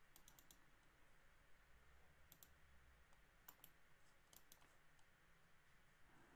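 Near silence with faint computer mouse clicks: a quick run of several near the start, then single or paired clicks every second or so.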